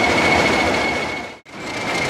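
British Rail Class 20 diesel locomotive running, its English Electric engine giving a steady noise with a high, steady turbocharger whistle. The sound drops out briefly about one and a half seconds in, then the same locomotive sound resumes.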